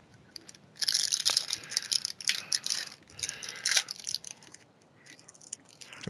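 Foil wrapper of a trading-card pack crinkling and tearing as it is ripped open by hand, in several short bursts over about three seconds, followed by a few faint rustles.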